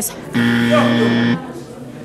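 A game-show buzzer sound effect: one steady, low, flat buzz lasting about a second, starting shortly after the beginning. It is the edited-in buzzer that marks a 'pass' verdict.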